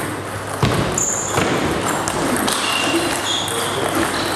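Table tennis balls clicking and bouncing on tables and bats around a large hall, with a sharper knock about half a second in and background voices.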